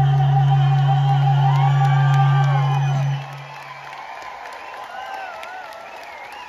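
A live band's closing chord, held with a strong low bass note, rings out and cuts off about three seconds in. It is followed by scattered whoops and cheers from the audience.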